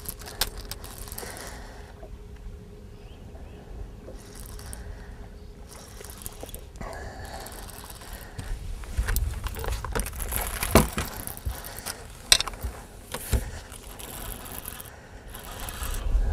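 Handling sounds on a bass boat's bow deck while a fish is played on rod and reel: scrapes and three sharp knocks over a low rumble that swells about nine seconds in.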